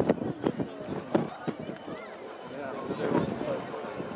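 Distant aerial firework shells bursting, a quick series of sharp reports in the first half, mixed with the voices of spectators talking nearby.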